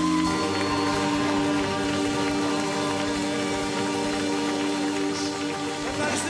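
A live band holds the song's final sustained chord, steady for several seconds, with audience clapping under it.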